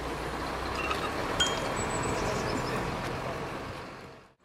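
Steady road-traffic noise with a low hum. A couple of brief, high chime-like pings come about a second and a half in, and the sound fades out at the very end.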